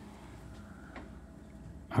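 Quiet room tone with a low steady hum and one faint tap about a second in.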